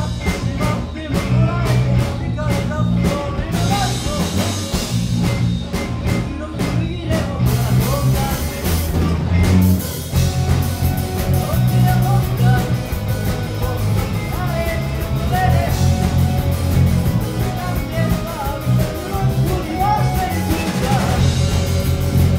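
Live rock band playing: a vocalist singing over electric guitars, bass guitar and a drum kit.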